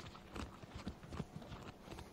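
Footsteps on pavement: a string of faint, irregular clicks.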